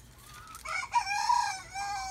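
A rooster crowing once: a single cock-a-doodle-doo that starts about half a second in and ends on a long note sliding slightly down in pitch.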